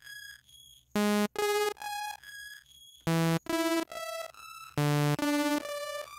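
Sawtooth synth notes played through a pitch-shifting delay set to one octave. Three short notes come about two seconds apart, and each is followed by echoes about half a second apart that climb an octave each time and fade. At the very end the last echo starts to bend upward as the pitch shift is turned past an octave.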